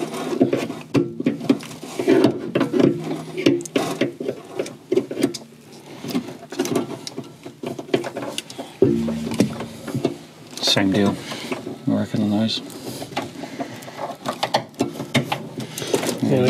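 Small clicks and rattles of hand work: pliers and a plastic cable clip and cable tie being handled on a wiring cable against a car's sheet-metal body panel.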